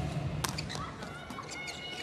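Indoor arena crowd noise, with one sharp smack about half a second in as the volleyball is struck on a serve. Faint high squeaks come later.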